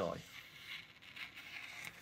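Scissors cutting through a sheet of paper: a faint, continuous sliding cut rather than separate snips.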